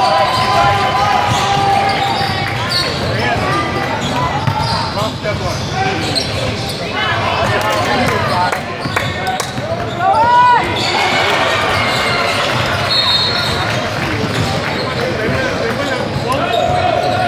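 Sounds of a basketball game in a large gym: a basketball bouncing on the hardwood court amid the calls and shouts of players and spectators, all echoing in the hall.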